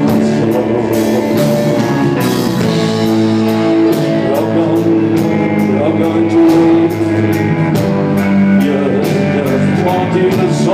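A rock band playing live at a steady, loud level: guitar with sustained notes over a drum kit, its cymbals striking at a regular beat.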